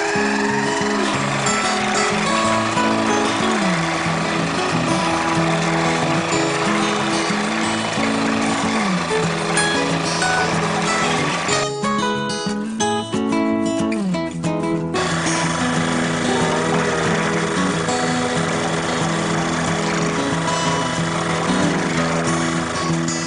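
Background music over a KitchenAid food processor's motor running as it slices carrots. The motor noise stops for about three seconds near the middle and then starts again.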